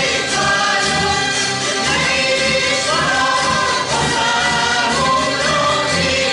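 A Hungarian zither (citera) ensemble strumming a folk tune together, with a group of voices singing along.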